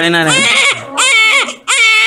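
A two-week-old newborn crying: loud, high-pitched wails in about three short bursts, each under a second, with brief catches of breath between.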